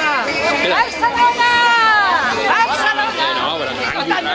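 Several people talking and calling out over one another, with one long drawn-out shout about a second in.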